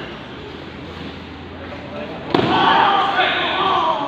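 Sparring in a karate kumite bout: a single sharp smack of a strike landing a little past halfway, followed straight away by loud shouting for the last second and a half.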